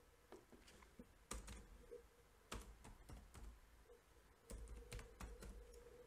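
Faint computer keyboard typing: a few irregular key clicks as a formula is typed in.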